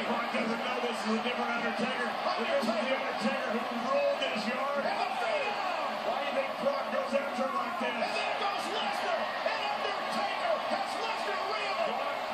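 Wrestling broadcast playing from a TV: indistinct commentary voices over steady arena crowd noise.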